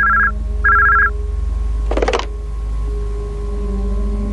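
Electronic telephone ringing twice, two even high-pitched rings of about half a second each, close together near the start. A single short spoken word follows about two seconds in, over a faint steady drone.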